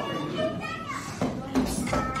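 Indistinct voices, children's among them, talking, with a low thud near the end.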